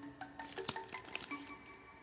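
Soft background music with held notes, over a few light clicks and crinkles, the sharpest about a third of the way in, from a plastic bag of shredded cheese being handled as the cheese is spread by hand.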